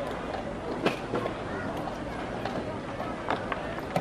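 Indistinct voices murmuring, with several sharp clicks. The loudest click comes about a second in and two more near the end, as a wooden chess piece is moved on the board.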